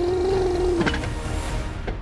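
A long held tone, like a drawn-out voice, sinking slightly in pitch and stopping about a second in, over background music with a steady low bass.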